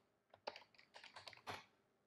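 Faint computer keyboard keystrokes: a scattered run of light clicks over about a second, the loudest about a second and a half in.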